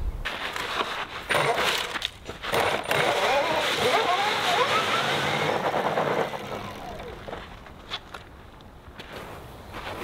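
Electric snow racer's brushless motor driving a screw-studded ATV tire over gravel: a gritty churning noise with sharp rattling clicks for about six seconds, then dying away as it stops.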